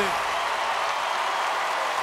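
Studio audience applauding and cheering, a steady even wash of clapping and crowd noise.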